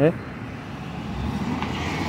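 A pickup truck driving past close by on the road, its tyre and engine noise rising as it nears.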